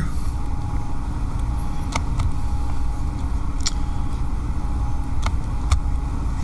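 Steady low rumble of room background noise with a faint thin hum, broken by a few sharp clicks about two, three and a half, five and five and a half seconds in.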